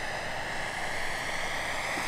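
Turbine-powered Bell 412 scale model helicopter in flight: a steady turbine whine over rotor noise, growing slightly louder as it comes in toward the landing area.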